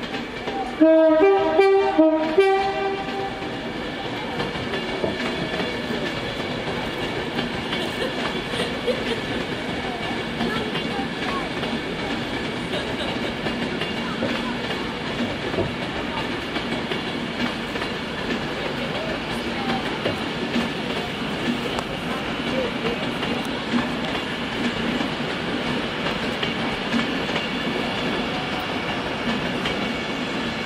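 Class 390 Pendolino electric train sounding its two-tone horn, a lower note then a higher one, for about a second and a half starting about a second in. After it comes the steady noise of the train running past on the rails.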